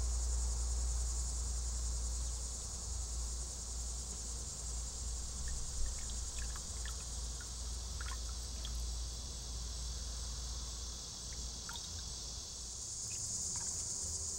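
Steady high-pitched chorus of crickets, with a low rumble underneath that eases near the end. Around the middle come a few faint clicks of glass as liquor is poured into a glass of mint.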